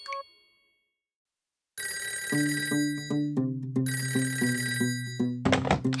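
Cartoon telephone ringtone ringing in repeated pulses over a light musical backing. It starts about two seconds in, after a short chime fades out and a moment of silence.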